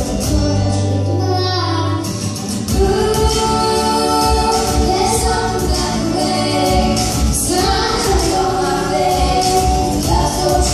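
A woman and a girl singing a pop-gospel song into microphones over music with a steady beat.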